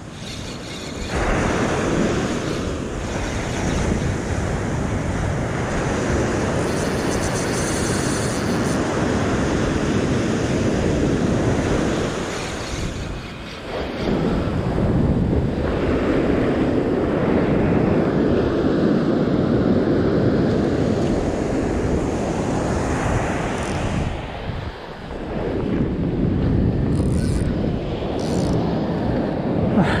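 Surf breaking and washing up a sand beach, with wind buffeting the microphone; the rushing noise swells and eases with the waves, dropping off briefly about halfway through and again near the end.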